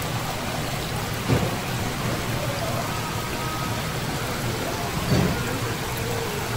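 Water streaming from a row of holes in a pipe and splashing into a live-shellfish tank: a steady, even splashing hiss.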